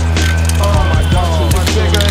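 Background music with a deep, steady bass line, a regular beat and sliding melodic lines above.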